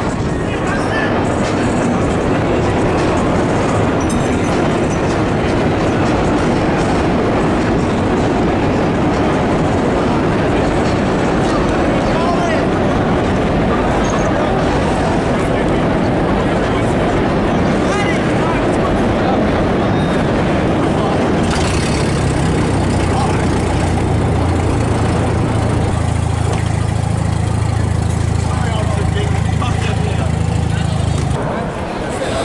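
Large crowd of voices shouting together, a dense, loud mass of sound with no clear words. About two-thirds of the way in, a low, steady drone joins in underneath.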